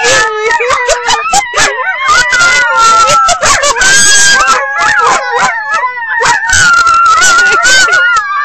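A dog howling along with people who are howling: several long howls overlap and are held for seconds, gliding a little in pitch.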